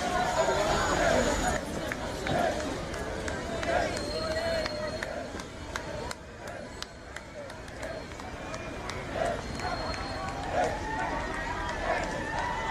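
Voices of a roadside crowd talking and calling out, with footsteps and short sharp clicks close to the microphone.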